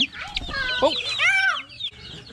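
Chickens clucking, many short calls overlapping.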